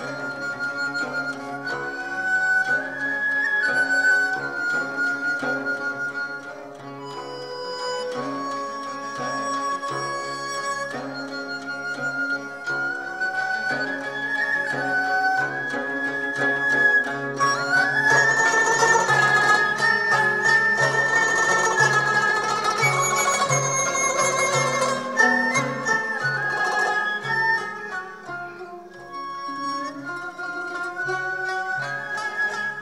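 Chinese folk ensemble playing a melody led by the dizi bamboo flute, with plucked pipa and zhongruan and bowed erhu. A hand-held frame drum keeps an even beat, and the ensemble grows fuller and louder a little past the middle, easing off near the end.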